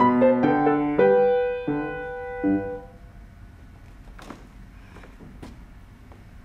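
Steinway grand piano playing the closing bars of a classical piece: a few last notes and a final chord ringing out and fading away about three seconds in. Then only faint room noise with a couple of soft knocks.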